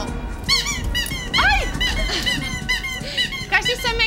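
A quick run of high, squeaky chirps, each rising and then falling in pitch, repeating irregularly throughout.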